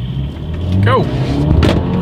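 A 2023 Mercedes-Benz GLE 350's 2.0-litre turbocharged inline-four accelerating hard from a standstill at full throttle, heard inside the cabin; the engine note climbs in pitch and loudness from about a second in.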